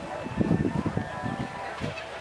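Background voices of people talking, with faint held tones in the second half.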